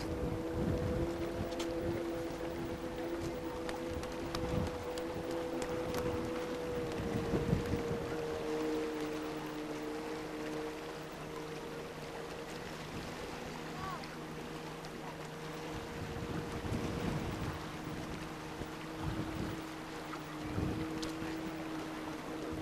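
Wind buffeting the microphone in repeated low rumbling gusts, over a steady droning hum of two held tones.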